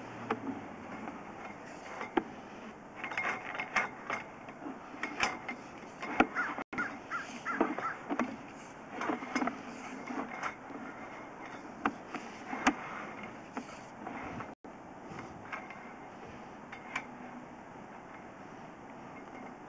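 Sewer inspection camera's push cable being fed down the line by hand, with irregular clicks, knocks and short squeaks as the rod and camera head advance through the pipe.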